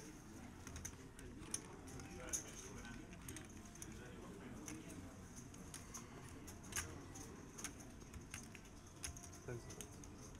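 Poker chips clicking now and then as players handle their stacks, over faint background voices in the card room.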